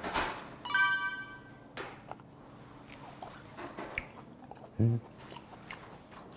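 Soft chewing of cubed raw beef in the mouth. About a second in there is one brief, high ringing clink.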